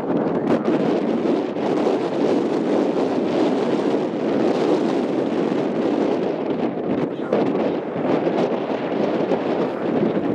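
Wind buffeting the microphone, a steady rushing noise.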